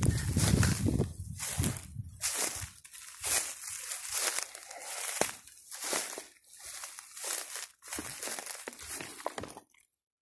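Footsteps through dry leaf litter and grass, about two steps a second, with the rustle of brushed vegetation. The sound cuts off suddenly near the end.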